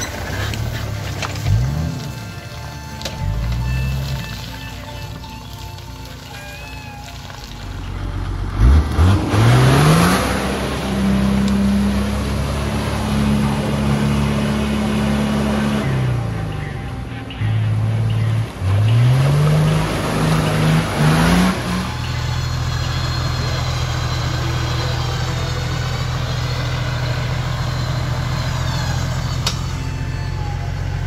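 An off-road 4x4 SUV's engine revving hard in repeated rises and falls as it churns through a deep muddy rut, over a wash of noise from the tyres and mud. The revving runs from about a third of the way in until about two-thirds through, then gives way to a steadier low drone.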